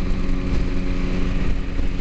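Steady mechanical rumble with a constant low hum from a running machine, unchanged throughout.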